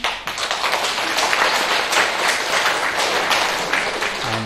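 Audience applauding: many hands clapping in a dense, steady run that starts suddenly.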